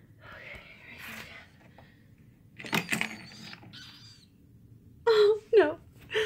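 A woman's distressed voice: soft, shaky breathing at first, then near the end a wavering, whimpering cry. A few sharp clicks sound about three seconds in.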